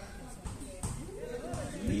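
Faint voices of players calling on the pitch, with a couple of dull thuds of a football being kicked, about half a second in and again near the end.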